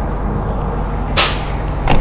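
A brief whoosh about a second in, then a sharp click near the end as a small hinged access cover on the side of an MCI D4500 coach is flipped open, over a steady low hum.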